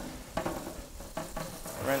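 Tap water running onto a wire refrigerator rack in a stainless steel sink, a steady hiss, while a sponge scrubs up and down along the wires. A few light clicks come through.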